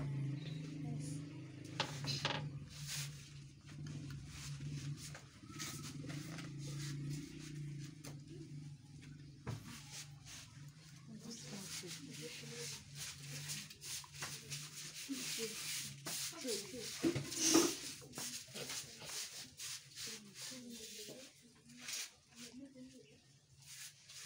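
Quiet background talk among several people, which the recogniser could not make out. A steady low hum runs under it for the first half. Scattered light taps and knocks come through, with one louder sharp sound about seventeen seconds in.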